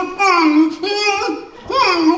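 A man's voice in a high, child-like falsetto, drawn out and sing-song, with pitch glides and a rising swoop near the end.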